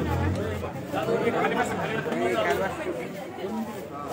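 Indistinct chatter of several people talking at once, with no single clear voice.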